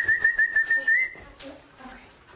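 A person's warbling whistle held for just over a second, its pitch wavering quickly and lifting slightly at the end: a whistled prompt to draw a dog's attention and bring it over.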